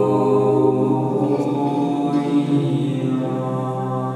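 A small mixed-voice a cappella ensemble singing sacred music, holding a long sustained chord with a steady low note beneath. It eases slightly quieter toward the end.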